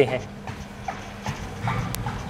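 Footsteps landing at a walking pace on the moving belt of a Star Trac treadmill set on an incline, with a steady low hum from the running machine.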